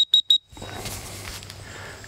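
A quick run of short, high electronic beeps, about seven a second, that stops within the first half second. A soft steady hiss follows.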